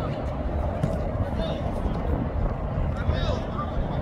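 Outdoor ambience of a training pitch: a steady low rumble, most likely wind on the microphone, with a few faint distant calls from players on the field.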